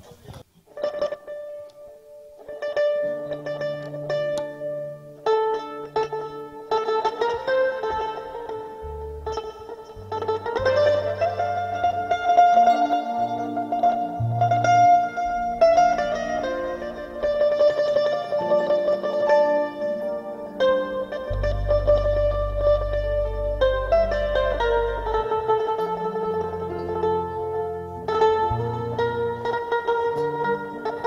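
Mandolin playing a song melody, with some long held notes. An electric bass guitar comes in with low notes about three seconds in, and the rest of the small band plays along.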